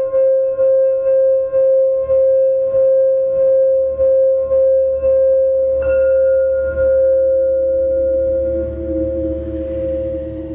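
A singing bowl rings with a steady tone that pulses in a wobble about twice a second. A light strike comes about six seconds in, and a second, lower tone joins about a second later.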